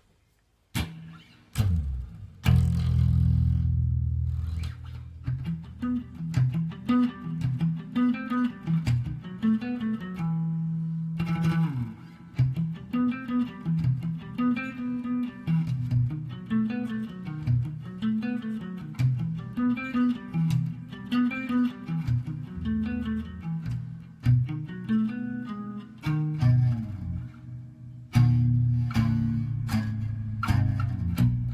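Electric guitar playing: a few plucked notes and a ringing low chord about a second in, then a repeating riff of low notes, with a short break about a third of the way through.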